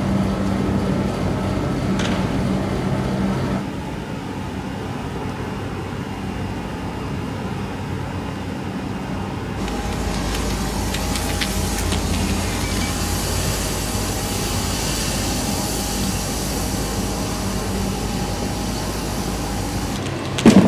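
A vehicle engine running with a low, steady hum, cut by a couple of sharp cracks. After a break, a heavy low rumble with a steady high hiss and a few clicks.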